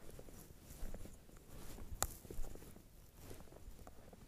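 Close rustling and crunching movement and handling noise, with a sharp click about halfway through and a couple of louder knocks just after.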